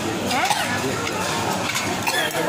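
Indistinct chatter of many voices in a busy restaurant dining room, with a brief click about half a second in.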